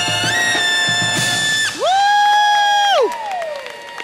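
A brass band of trumpets, trombones and sousaphones holds a chord, then plays a loud held final note that scoops up at its start and falls off about three seconds in, ending the piece. A few scattered cheers and whoops follow.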